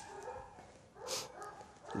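A dog whining faintly in short high-pitched spells, with a short breathy noise a little after a second in.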